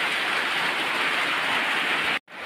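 Steady, even hiss of rain falling.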